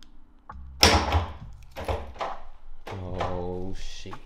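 A car's front trunk being opened with the key fob: a sharp thunk about a second in as the lid releases, followed by further shorter knocks.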